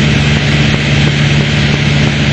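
Piper Warrior's four-cylinder Lycoming piston engine and propeller droning steadily in cruise flight, heard from inside the cabin as a loud, even low hum over rushing air.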